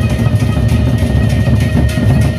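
A gendang beleq ensemble playing: large Sasak barrel drums beaten in a dense, fast rhythm, with a sustained high ringing tone held above the drumming.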